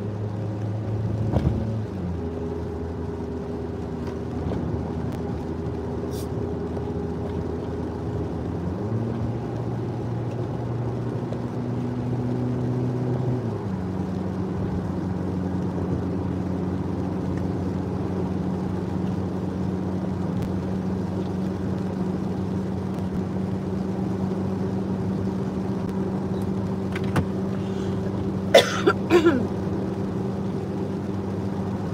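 Car engine and road noise heard from inside the cabin while driving, the engine note stepping to a new pitch a few times. Near the end come a few short, sharp, loud sounds.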